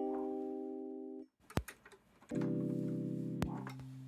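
Ableton Live's Electric physically modelled electric piano, on its default preset, playing two held chords that each fade slowly and then stop, with a short click between them.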